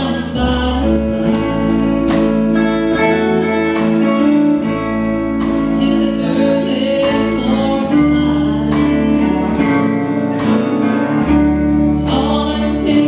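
Live band playing a song: a woman singing lead over guitars, bass and a drum kit keeping a steady beat.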